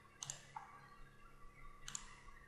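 Two faint computer mouse clicks, about a quarter second in and near the end, each a quick press-and-release.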